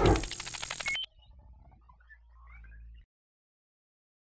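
Logo intro sound effect: a sudden hit with a bright metallic ring that lasts about a second, followed by a faint tail that cuts off to silence about three seconds in.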